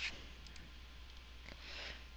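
A few faint clicks of a computer mouse button over a low, steady hum.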